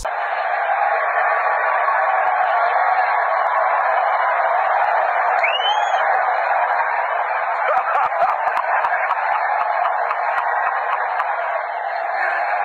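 Steady stadium crowd noise, many voices blending into a dense din, heard through a phone's microphone. A short rising high-pitched note stands out about halfway through.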